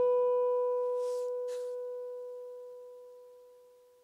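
Acoustic guitar's last note of the song, a single clear tone plucked just before and left ringing, fading slowly away to nothing over about four seconds.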